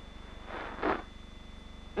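Steady low hum and hiss of an old film soundtrack, with a brief rush of noise lasting about half a second in the middle.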